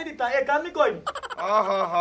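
Speech only: people talking in dialogue, with a brief break about a second in.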